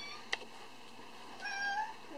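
A short, high meow about one and a half seconds in, after a sharp click near the start.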